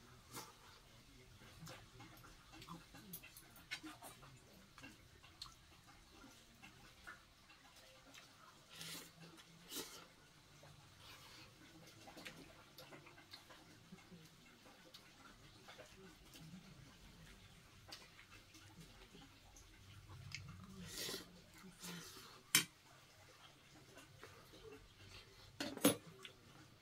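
Quiet eating: a metal spoon and chopsticks clink now and then against a stainless steel bowl, with soft chewing between. A sharper clink comes near the end.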